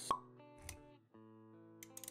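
Intro sound effects over background music. A sharp pop comes just after the start and is the loudest sound. A softer thump follows about half a second later, over held music notes that break off briefly and then resume.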